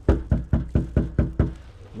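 Knuckles knocking on a front door: a quick, even run of about nine knocks, signalling that a delivery has been left at the door.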